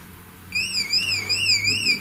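A high warbling tone, wavering up and down in pitch about twice a second, starting about half a second in, over a faint low hum.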